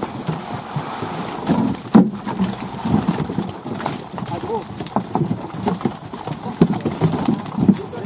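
Freshly harvested catla fish flapping and slapping on a tarpaulin and against each other, in a scatter of irregular wet thuds and knocks, with men's voices talking.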